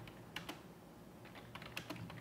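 Faint computer-keyboard keystrokes: two taps about half a second in, then a quick run of taps in the second half.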